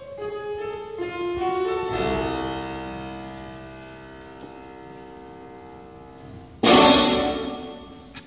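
Live symphony orchestra: a single descending melodic line, then a full sustained chord that swells and slowly fades. About two-thirds of the way in, a sudden loud burst cuts in and dies away.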